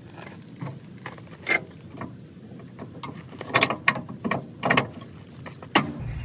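Steel weight distribution hitch hardware clanking and clicking as the passenger-side trunnion spring bar is fitted into its bracket. The sound is a string of short metallic knocks, mostly in the second half, and the bar goes in fairly easily.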